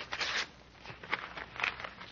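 Wrapping paper crinkling as a present is unwrapped: a burst of rustling in the first half second, then a few faint crackles.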